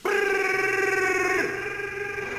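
A man's long, trilled 'brrr' shiver sound from the soundtrack of a Coca-Cola 'Brrr' TV ad. It starts abruptly and weakens after about a second and a half. In the ad it is the sign of the ice-cold drink.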